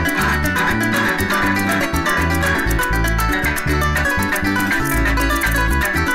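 Venezuelan llanero music: an arpa llanera leading with fast plucked runs over a strummed cuatro and electric bass, and maracas shaking a fast, steady rhythm.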